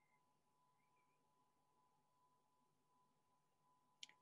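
Near silence: a quiet pause with no audible sound.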